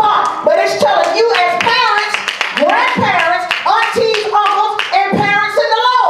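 Loud, excited voices in a church congregation with hand clapping, the clapping strongest about one to two seconds in.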